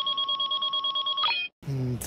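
Edited-in electronic sound effect: a steady, fluttering tone pulsing about twelve times a second. It lasts about a second and a half, shifts pitch briefly just before cutting off abruptly, and a man's voice begins near the end.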